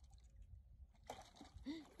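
Near silence: a faint low rumble, joined by a faint hiss about a second in, with a faint voice near the end.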